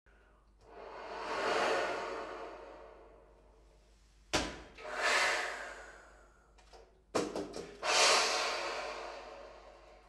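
Baritone saxophone played with breath sounds: air blown through the instrument in three swells that rise and fade away, the second and third each set off by a sharp click.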